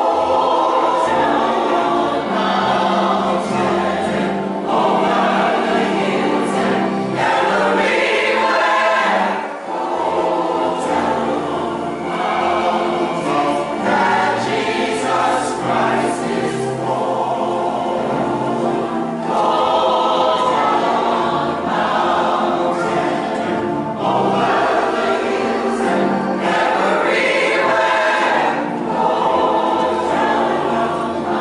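Mixed church choir of men's and women's voices singing a gospel song, starting suddenly at the very beginning after a brief quiet.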